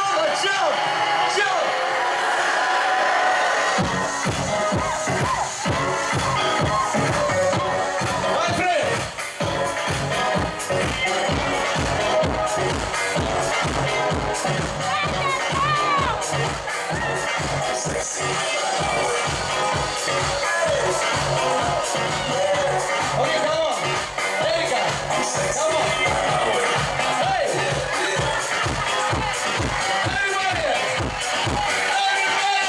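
Loud electronic dance music played over a club sound system; a steady bass-drum beat comes in about four seconds in. Vocals and crowd voices sit over the music.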